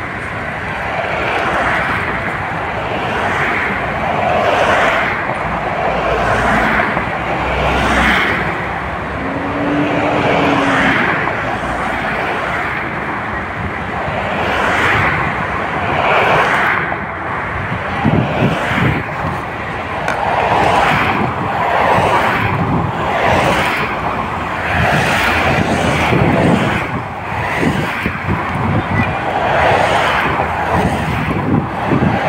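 Road traffic noise as SUVs and other vehicles drive past, with a short low tone that rises and falls about ten seconds in.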